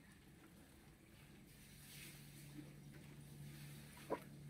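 Near silence: faint background with a low steady hum that comes in about a second and a half in.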